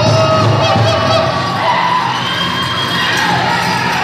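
Powwow drum group singing a men's fancy dance song in high, held voices over the drum, with the crowd cheering and whooping over it.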